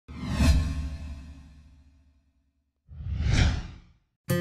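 Two whoosh transition sound effects: the first comes in suddenly and fades away over about two seconds, the second swells up near the end and dies away.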